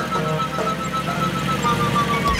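Cartoon flying-saucer sound effect: a steady low hum with a rapidly pulsing tone that slowly falls in pitch, over background music.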